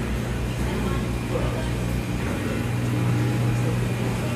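Steady low machine hum, swelling slightly past the middle, with indistinct voices in the background.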